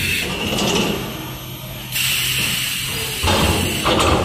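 Automatic mattress tape edge machine's flipper turning a mattress over on the conveyor table: steady machine running with a hiss that cuts out about a second in and comes back at two seconds, and a heavier low rumble near the end as the mattress comes down flat.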